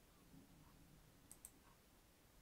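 Near silence, with two faint clicks close together about a second and a half in: a computer mouse button being clicked.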